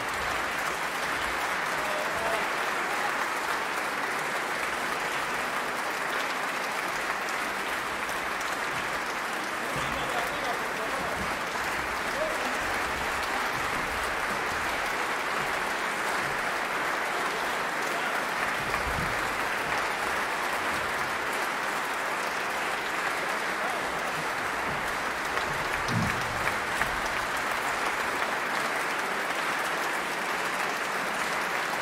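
Concert audience applauding, a dense, steady clapping that holds at the same level throughout.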